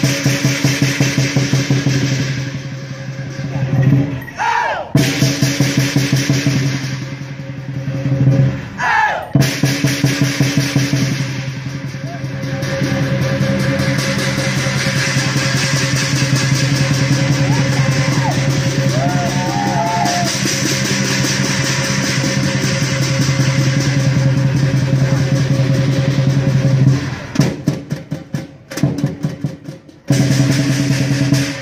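Lion dance percussion band playing: a large drum beaten in fast strokes over steadily ringing gong and cymbals. Through the middle the drumming goes into a long, even roll before returning to separate rhythmic strokes near the end.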